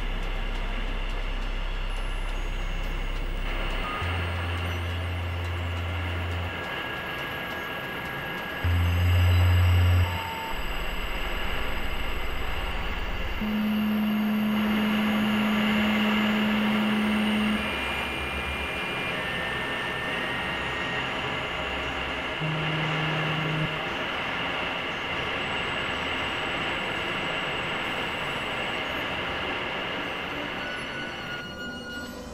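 Experimental electronic drone music from synthesizers: a dense, hissy drone under low sustained tones that change pitch every few seconds, with short high blips now and then. It is loudest briefly about nine seconds in.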